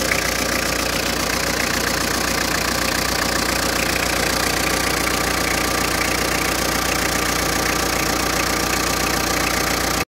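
Peugeot 206's 1.9-litre four-cylinder diesel engine idling steadily, with the fast, even clatter of diesel combustion.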